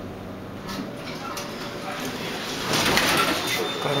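Schindler elevator cab sounds: a low hum that swells into a rushing hiss, loudest about three seconds in, with a thin high beep starting near the end.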